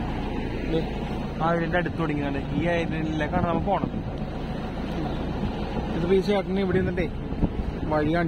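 Small passenger motorboat's engine running steadily while under way, with people talking over it.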